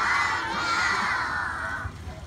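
A large group of children shouting together in one long, sustained cheer that fades out near the end.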